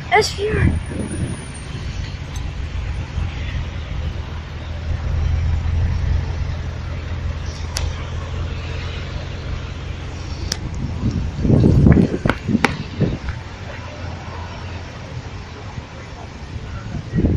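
A car engine idling with a steady low hum, a little stronger for a few seconds in the first half. Short bursts of voices come right at the start and again about three-quarters of the way through.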